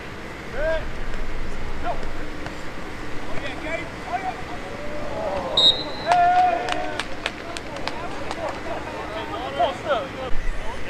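Scattered shouts and calls from football players and sideline spectators on an open field. About halfway through comes a short, high referee's whistle blast, then a held shout and a quick run of sharp smacks.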